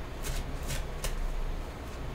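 A small deck of oracle cards being shuffled by hand, a few short soft card snaps in the first second or so.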